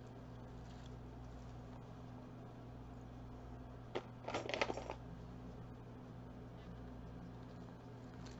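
Small metal jewelry pieces clinking briefly together as a hand picks through a pile of costume jewelry, a click then a short cluster of clinks about four seconds in, over a low steady hum.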